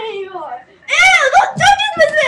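A child's high-pitched voice whining and wailing without clear words, its pitch sliding up and down. It is quieter at first and much louder from about a second in.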